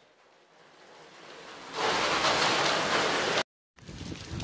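Heavy rain pouring down: a faint hiss that swells, then a loud, even downpour from about halfway in, broken off by a short gap near the end.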